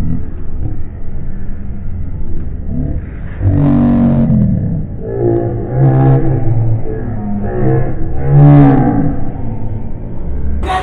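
Muffled, distorted men's voices calling out in drawn-out shouts over a low crowd rumble, louder in three stretches about three and a half, five and a half and eight and a half seconds in.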